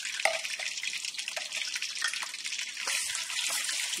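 Tomato paste frying in hot oil in a pot: a steady sizzle with scattered pops and crackles.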